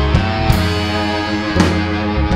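A live soul band with a horn section, guitar, bass, keys and drums playing an instrumental passage: held chords over a steady bass line, with a sharp drum-and-cymbal hit about once a second.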